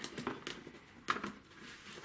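Faint handling noise of a rotary cutter being moved and set down on a self-healing cutting mat, with a few light clicks near the start and one short tap about a second in.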